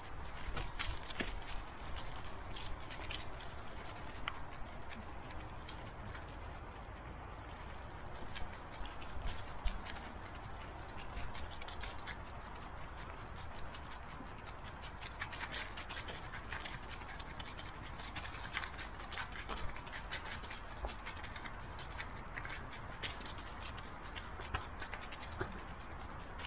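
A dog's paws rustling and crunching through dry fallen leaves as it walks, heard up close from a camera strapped to the dog, with many small crackles and a steady low rumble on the microphone.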